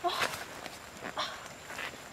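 Rustling and crunching of dry fallen leaves underfoot as a person steps and crouches, in a few short bursts, with brief calls from an animal.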